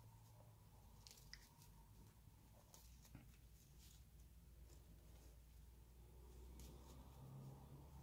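Near silence: room tone with a steady low hum and a few faint, soft ticks.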